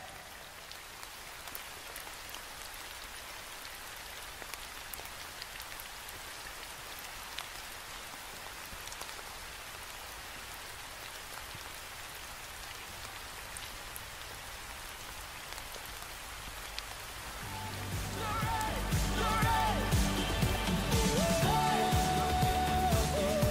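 Steady rain: an even hiss with scattered drops ticking. Music fades in over it in the last few seconds.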